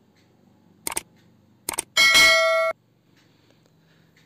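Subscribe-button animation sound effect: two short clicks, then a bright bell-like ding that rings for under a second and cuts off suddenly.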